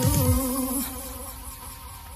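The last held chord of a pop-style cartoon theme tune, fading away with a slight buzz. Its lowest note stops a little under a second in, and the rest dies down to a faint tail.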